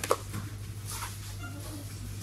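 A single sharp knock of hard plastic plates being handled and lifted from a stack, over a steady low hum.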